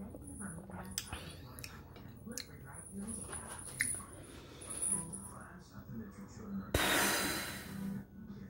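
A person tasting hot coffee: faint sipping and small mouth clicks, then a long breath out that starts suddenly near the end and fades.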